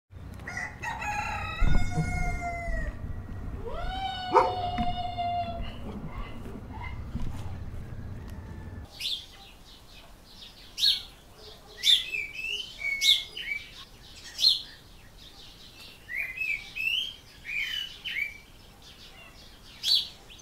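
A rooster crowing twice, long calls that rise and then hold their pitch, over low background noise that cuts off abruptly about nine seconds in. Then small birds chirp in short, high, repeated calls.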